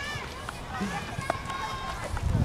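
Distant voices of children calling out across an open park, over a steady low wind rumble on the microphone.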